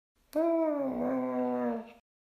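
Cartoon cat yowl sound effect: one drawn-out cry, holding a steady pitch that sags slightly, about a second and a half long.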